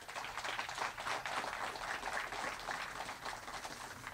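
A small audience applauding a guest as he walks up to speak. The clapping is steady and thins out near the end.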